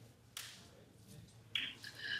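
Quiet pause with one faint click about a third of a second in and a brief faint hiss near the end: lip noise and breath from a man about to speak.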